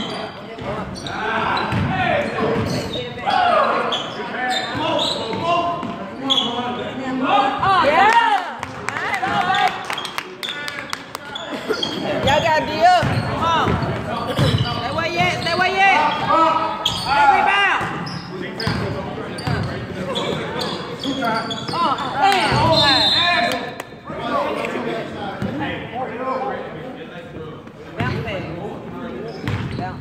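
Basketball bouncing on a wooden gym floor during a game, with players' shouts and calls echoing around the hall.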